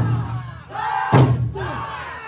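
Okinawan eisa drumming: large barrel drums struck with sticks, one heavy strike at the start and another about a second in, with the dancers' shouted calls and singing between the beats.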